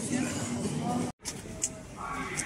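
Background voices of people talking in the street, cut by a sudden brief dropout to silence just over a second in. After it there is a quieter hum of street noise.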